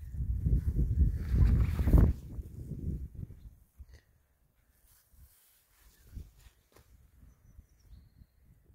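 Low, irregular buffeting rumble on the phone's microphone for about the first three and a half seconds, loudest around two seconds in, then only faint scattered rustles.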